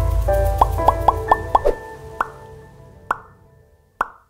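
Outro jingle for a logo animation: a low musical swell fading away under a run of short pitched plops. Five come in quick succession in the first half, then single plops further apart toward the end.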